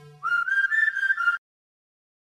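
A whistled melody line, the song's whistle hook, plays alone: a quick upward slide, then a few short notes. It cuts off abruptly into dead digital silence partway through the phrase, where a video-render fault cut the audio.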